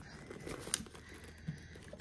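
Faint rustling from hands handling a small Louis Vuitton Nano Speedy handbag and the items inside it, with one sharp tick a little under a second in.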